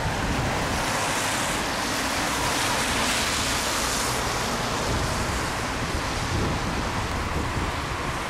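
Cars driving past on the road, a steady hiss of tyres that swells about two to four seconds in, with wind rumbling on the microphone.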